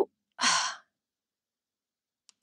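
A woman's short breathy sigh, about half a second in, as she gathers her thoughts before speaking.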